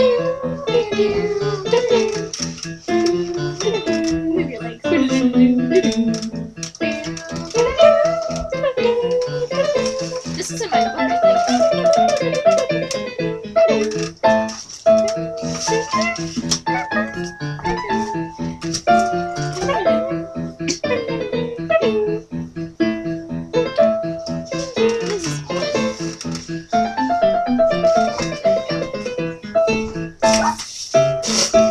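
Electronic home keyboard being played, with held notes over a steady, rattling percussion beat. A voice sings along without words, sliding up and down in pitch.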